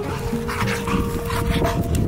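Pit bull barking several times in excited play, over background music with steady held notes.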